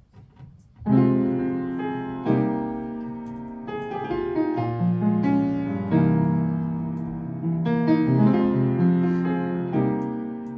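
Piano starting an accompaniment about a second in: struck chords that ring on under a melody line, the introduction to a song before the singer comes in.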